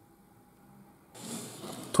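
Near silence for about a second, then a steady hiss of room noise from about a second in.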